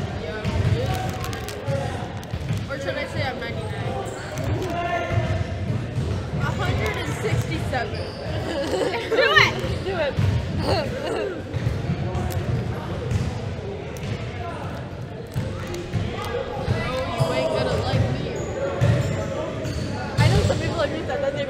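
Basketballs bouncing on a gym floor: repeated, irregular dull thuds in a large hall, under indistinct background voices.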